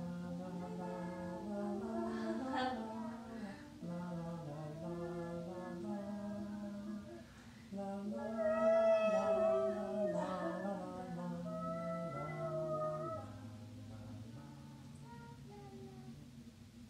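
Voices singing a slow, unaccompanied lullaby together on 'la la la', in long held notes that step and slide in pitch. A man's low voice carries the tune, higher voices join most strongly in the middle, and the singing sinks lower and softer near the end.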